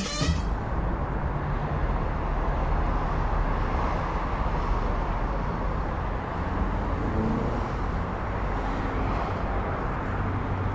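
Steady low rumble and hiss of vehicles in the open air, with no distinct engine note and no sharp events. The GMC Hummer EV rolling slowly forward is electric.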